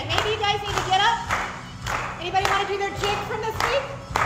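An upbeat song, with a singing voice over backing music, and hands clapping along in time, a little under two claps a second.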